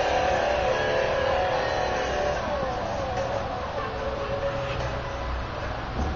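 Small battery-powered portable speakers playing a Palm Pilot's music output, but it sounds wrong because the headphone plug is not pushed fully into the Palm Pilot's jack. It comes out as a steady layered tone that dips slightly in pitch about halfway through.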